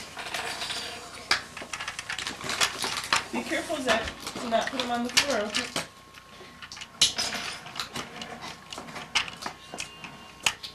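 Hard plastic toys being handled and knocked together, making an uneven run of sharp clicks, taps and clatters.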